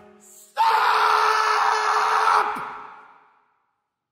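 Male opera singer's final outburst: one loud, raw cry on a single held pitch, starting about half a second in and breaking off after about two seconds, its echo dying away in the church hall.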